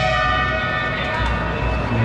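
A held tone of several steady pitches sounding together, horn-like, that stops shortly before the end, over a steady low hum.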